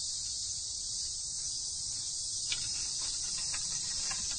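Steady, shrill chorus of summer cicadas.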